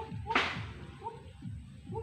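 A single sharp swish about a third of a second in, over a background of short, rapidly repeated chirping calls.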